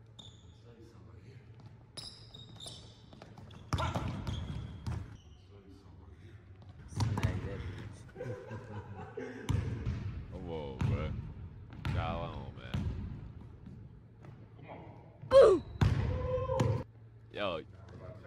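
A basketball dribbled and bouncing on a hardwood gym floor in a large indoor gym, with men's voices over it.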